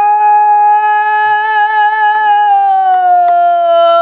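A woman singing pansori, holding one long note in a strong, bright voice that slides gently lower in pitch over the second half. A few faint taps sound under it.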